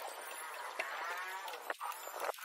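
An animal call, one long drawn-out call of about a second that rises and then falls in pitch.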